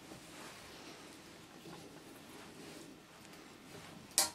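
Faint sound of an M10 hand tap being turned by a tap wrench, cutting a thread into steel: a quiet, even scraping barely above room tone.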